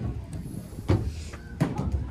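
A few sharp knocks of a ball hitting a plywood floor: one about a second in, then two close together near the end.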